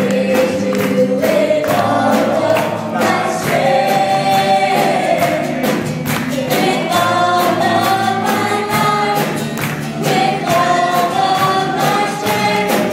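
Live gospel worship song: a keyboard-led band and a roomful of voices singing together, over a steady beat of percussion.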